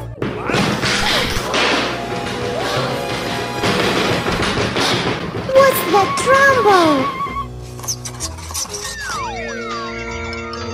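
Loud crashing and banging lasting about seven seconds: the noise of something in a dressing table, with cartoon sound effects gliding up and down in pitch near its end. It then gives way to light background music.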